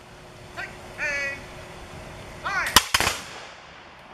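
A volley of black-powder muskets fired by a line of reenactors: two sharp cracks very close together near the end, echoing briefly. A voice calls out about a second in and again just before the shots, like drill commands.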